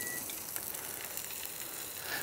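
A short high beep as the rotisserie button on the charcoal grill's control panel is pressed, then a steady faint sizzling hiss from the hot grill.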